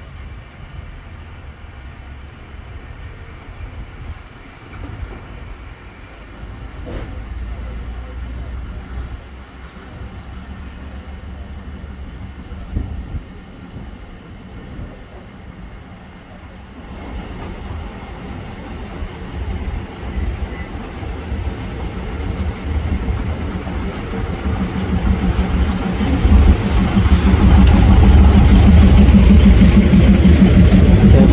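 A State Railway of Thailand diesel railcar train approaches on the next track and runs past close alongside. Its engine and wheel rumble grow steadily louder over the second half and are loudest near the end as the cars pass by.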